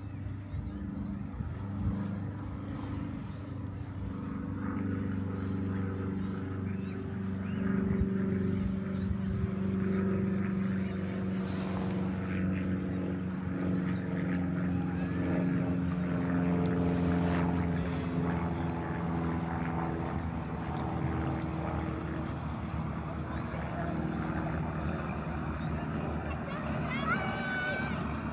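Engine of a river cruise boat running steadily as the boat passes at low speed: a low, even hum that grows louder towards the middle and then eases slightly.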